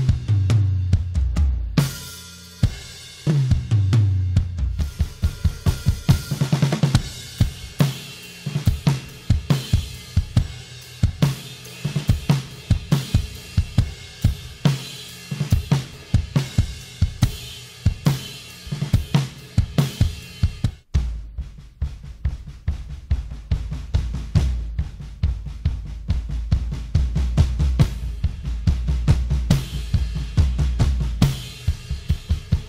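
Mapex Saturn drum kit played as a full groove with kick, snare, hi-hat and cymbals, with tom fills in the first few seconds, ringing in a large sanctuary's natural reverb. About two-thirds of the way in the playing breaks for an instant and picks up again with a heavier low end.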